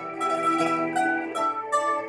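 Bandurria playing the melody in single plucked notes, about six notes in two seconds, over a recorded backing track.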